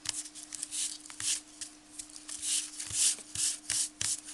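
Hands rubbing and smoothing burlap (jute) fabric down onto a cardboard frame to press it into fresh hot glue. A series of scratchy rubbing strokes comes quicker and louder in the second half.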